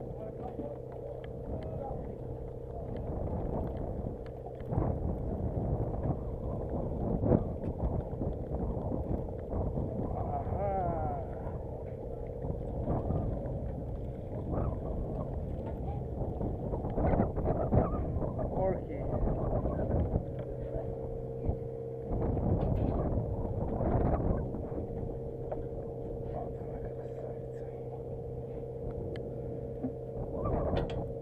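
A boat's engine runs with a steady hum under a constant low rush, while indistinct voices and occasional knocks come from the deck.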